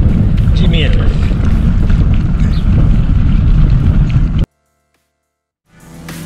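Loud wind rumble on the microphone of a camera riding along on a moving bicycle. It cuts off abruptly after about four and a half seconds, and music starts faintly near the end.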